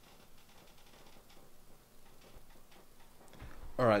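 Faint, irregular light ticks over quiet room tone, then a man's voice near the end.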